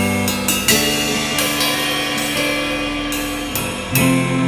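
A band playing live: a drum kit with cymbal crashes, one about two-thirds of a second in and another near the end, over held electric guitar chords.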